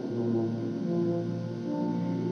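Music: sustained low brass chords, a deep held note under upper notes that shift a couple of times.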